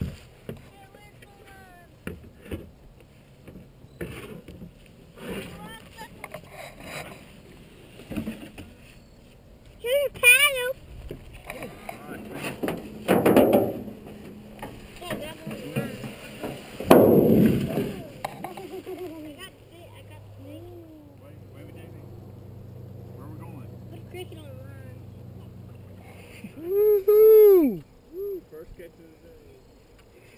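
Children's voices calling out, with a loud rising-and-falling shout or squeal near the end, mixed with scattered knocks and two louder rushing noises in the middle.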